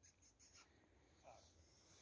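Near silence, with a few faint short rustles in the first half second and another faint sound about a second in.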